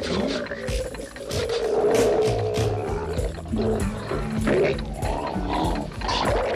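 Live rock band in an instrumental passage: the drum kit is struck hard and often under held, wavering lead notes and lower sustained notes.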